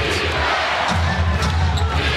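Basketball arena crowd noise with music playing over the arena speakers, a heavy bass line pulsing underneath, during live play.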